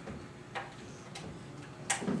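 Quiet classroom room tone with three faint, short clicks spaced about two-thirds of a second apart, the last one slightly louder near the end.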